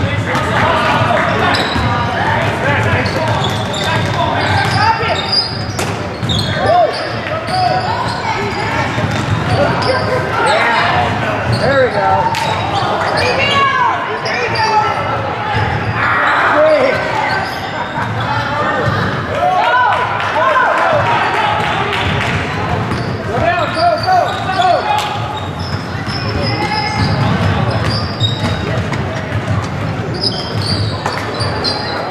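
Basketball bouncing on a hardwood gym floor during play, with indistinct shouts from players and onlookers, echoing in a large gymnasium.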